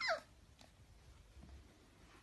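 Beagle puppy giving one short, high yelp that falls steeply in pitch, during rough play with another puppy.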